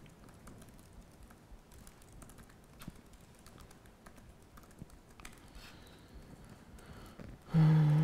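Computer keyboard typing: scattered, irregular keystrokes as code is typed in an editor. A short voiced sound, a person's hum or the start of a word, comes near the end and is louder than the typing.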